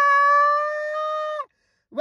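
A woman's voice holding one long, high sung note, steady in pitch, that cuts off about one and a half seconds in.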